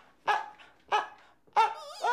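Chinese crested dog giving three short, high yips a little over half a second apart, the last one wavering in pitch.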